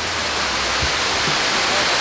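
A small waterfall splashing steadily into a pond, a constant rushing hiss of falling water.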